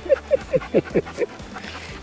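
A person laughing in a quick run of about seven short bursts, each falling in pitch, dying away after about a second and a half.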